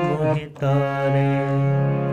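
Harmonium playing the melody of a shabad: reed notes held steadily over a low sustained drone, with a short break about half a second in before the next long note.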